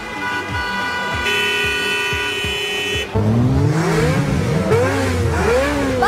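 Vehicle horns honking steadily for about three seconds, with a second horn of a different pitch joining about a second in, followed by a person laughing.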